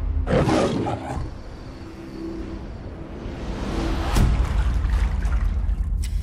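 Cinematic trailer sound design: a constant deep rumbling drone. A loud whooshing hit comes about half a second in, and a swell builds to a second sharp hit about four seconds in.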